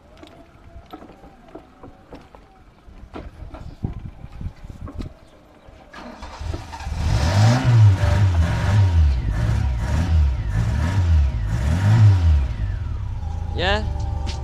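A few faint clicks, then a classic Fiat X1/9's engine starts about six seconds in and is revved in short blips about once a second, five times, before settling to a steady idle near the end.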